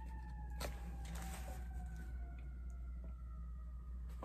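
An emergency vehicle siren, one long wail whose pitch glides slowly downward, with a few faint paper crinkles.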